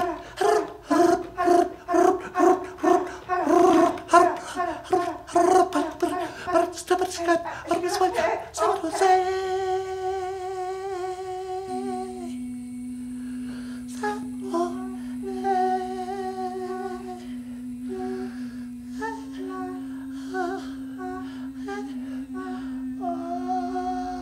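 Improvised wordless vocalising by several voices. About nine seconds of rapid, staccato laugh-like vocal pulses give way to long held tones. Then a steady low hummed drone runs to the end, stepping up slightly about two-thirds through, while a second voice sings short held notes above it.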